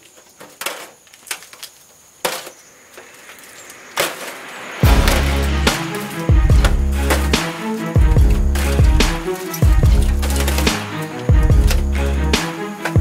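A few sharp clicks and knocks of metal tongs against crab legs and the grill grate. About five seconds in, background music with a heavy bass beat starts and becomes the loudest sound.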